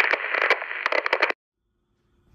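A burst of crackling, radio-like static with scattered clicks, lasting about a second and a half and cutting off suddenly.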